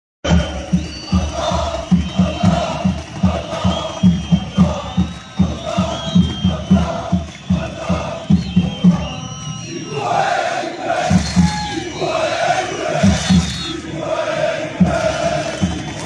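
A stadium crowd of football supporters chanting together to a fast, steady drum beat. The drumming drops out for about a second a little past the middle, then picks up again.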